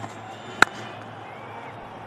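A single sharp crack of a cricket bat striking a fast delivery, about half a second in, over steady stadium crowd noise. It is the sound of a clean, well-timed hit that goes for four.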